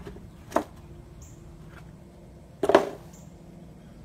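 Two brief clatters of small objects being handled, about two seconds apart, the second louder.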